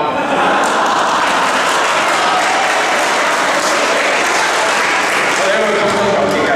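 Audience applauding, a steady wash of clapping with many voices mixed in.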